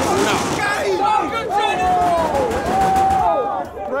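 Football spectators shouting in reaction to a shot going wide: a cry of "No!" and then several voices overlapping in long, drawn-out yells that fade near the end.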